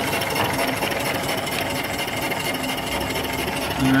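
Small steam engine (2.75-inch bore, 4-inch stroke) running steadily, with a fast, even mechanical ticking.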